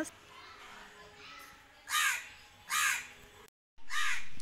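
A crow cawing twice, two harsh calls a little under a second apart from about two seconds in.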